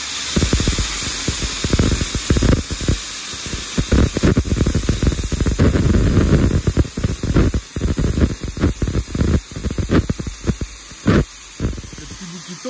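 Plasma torch of a Tauro CNC plasma cutting table cutting steel plate: a steady hiss under a loud, irregular crackle of the arc. Over the last few seconds the crackle breaks up into separate pops.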